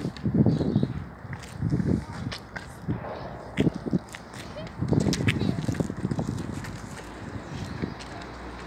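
Indistinct voices in several short bursts, with sharp clicks and knocks scattered throughout.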